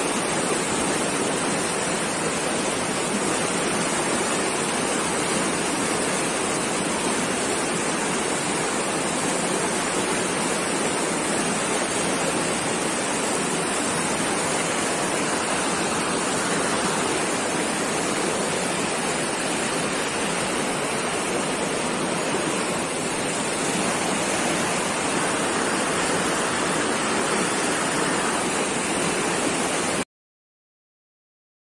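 Fast mountain river rushing over rocks: a steady, loud, even noise of white water.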